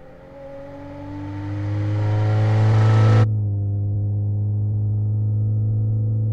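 Car engine sound synthesized with the AudioMotors plug-in: the engine heard from outside grows louder and rises slightly in pitch as it accelerates. About three seconds in it cuts suddenly to the same engine heard from inside the cabin, a steady muffled drone.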